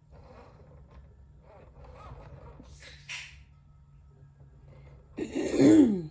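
A person sneezing once, loudly, near the end; the sneeze's pitch falls. A short, hissy burst of breath comes about three seconds in.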